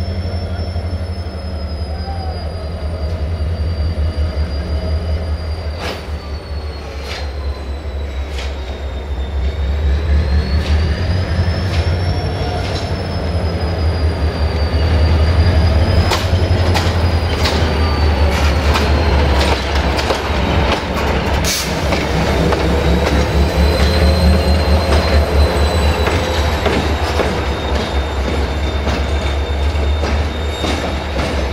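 Diesel locomotive 65-1300-6 shunting at low speed: its engine runs with a steady low drone while the wheels squeal on the track in a high whine that wavers up and down. Irregular sharp clicks of wheels over rail joints come more often in the second half.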